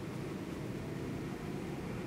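Steady low hum with a faint hiss over it: background room noise with no distinct event.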